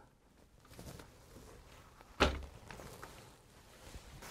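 A single sharp knock about two seconds in, amid faint handling rustle: the roller blind's end stop being pressed down hard into the slot of its wall bracket to secure it.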